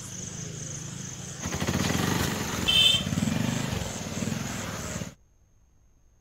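A small engine running, growing louder with rapid pulsing about a second and a half in, over a steady high whine. The sound cuts off abruptly about five seconds in.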